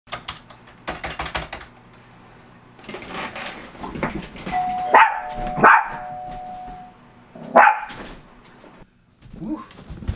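Two-note doorbell chime, a held ding then a lower dong, with a dog barking three times over and after it.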